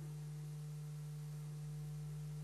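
Faint steady low electrical hum in the sound system during a pause in speech, one unchanging tone.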